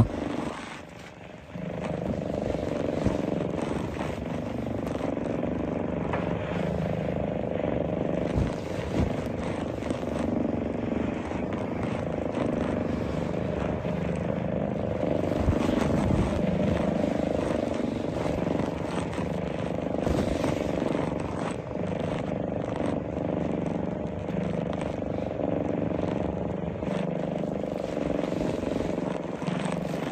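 A steady low droning hum, fainter for about the first second and a half and then constant.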